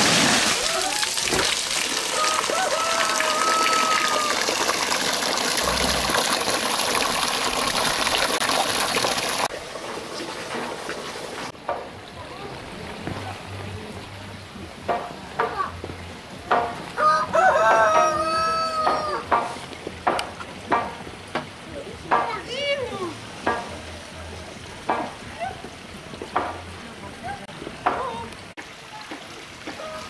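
Water gushing loudly from a pipe into a stone trough for the first third, cutting off after about ten seconds. In the quieter remainder a rooster crows, loudest about two-thirds of the way through, among scattered short knocks.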